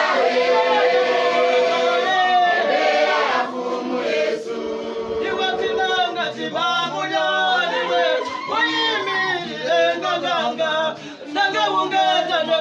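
A church congregation singing together in chorus, many voices at once, with a brief dip in the singing shortly before the end.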